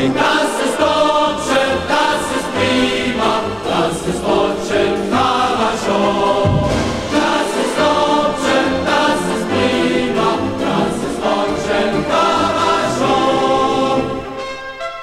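A choir singing a passage between verses of an East German soldiers' song, with instrumental backing.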